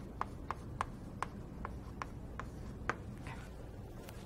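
Writing on a lecture board by hand: a run of short, sharp taps and strokes, about two to three a second, stopping shortly before the end.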